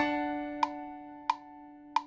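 GarageBand's metronome counting in four beats before recording: four sharp clicks about two-thirds of a second apart, the first the loudest, over a steady held tone.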